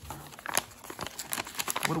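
Paper envelope crinkling and rustling in the hands as it is opened and a trading card in a plastic case is pulled out: a run of short, irregular crackles.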